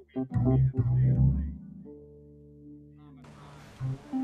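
Music from a plucked string instrument: a run of low plucked notes, then held notes that fade away, with a hiss coming in about three seconds in and the playing starting again near the end.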